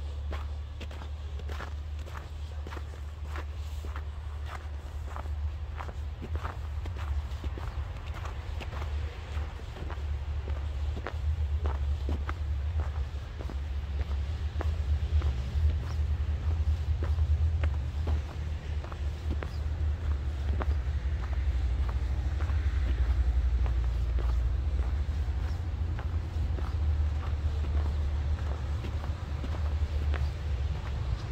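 Footsteps in fresh snow at a steady walking pace, over a steady low rumble.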